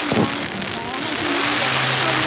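Fireworks display going off, a continuous crackling hiss with a sharp report about a quarter second in, over the chatter of a crowd of spectators. A low steady hum joins in near the end.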